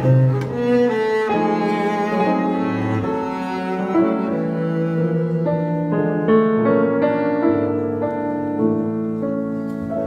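Double bass bowed in a slow melody of long held notes with vibrato, with piano accompaniment underneath.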